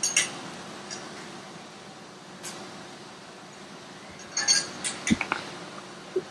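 Plastic protective tape being pulled and pressed around a metal part: scattered short crackles and light clinks, with a cluster of them and one low thud about four to five seconds in, over a faint steady hum.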